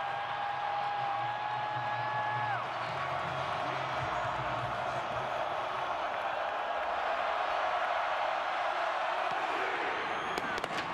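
Large stadium crowd cheering and roaring as a football kickoff is made, getting a little louder toward the kick. A steady held tone sounds over the crowd for the first two and a half seconds, then stops.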